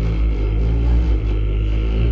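Live Southern gospel quartet and band holding a steady final chord, with a deep bass note underneath.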